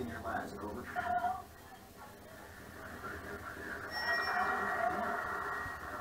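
A television playing in the room: programme dialogue that sounds thin and muffled, with a louder passage about four seconds in.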